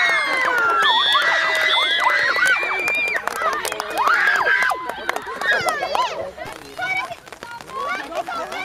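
Young girls shouting and cheering together as a goal is celebrated, many high voices overlapping at once. The noise dies down about five seconds in, leaving scattered calls.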